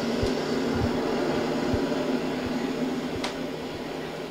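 Steady rushing background noise from a film's soundtrack playing over loudspeakers in a small room, with a few soft low thumps; it drops away just after the end.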